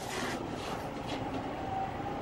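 A pause in amplified speech, filled only by steady low background noise of the room, an even hiss and rumble with no distinct event.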